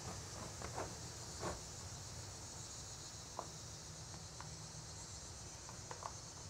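Quiet, with a steady faint high hiss and a few soft, scattered taps as a small plastic container and its lid are worked against an OSB wall to trap a spider.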